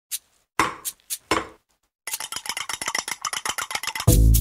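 About five bright clinks, each with a short ringing tail, then after a brief gap a fast run of rapid clicking, roughly ten a second.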